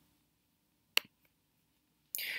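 A single sharp mouse click about a second in, in otherwise quiet room tone.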